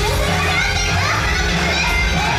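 Live idol-pop band track played loud through a venue PA, with a steady bass beat and high-pitched voices sung or called over it.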